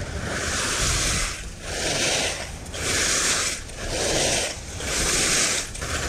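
Skis carving linked turns on firm, icy groomed snow: a scraping hiss that swells and fades about once a second with each turn, over a steady low wind rumble on the microphone.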